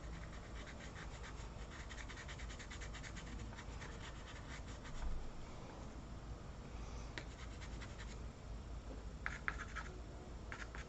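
Pastel pencil scratching on paper in quick repeated strokes through the first half, thinning out, then a few short separate strokes near the end.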